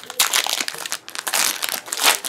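Foil booster-pack wrapper crinkling and crackling as it is handled and opened: a dense run of small crackles, loudest about a second and a half in.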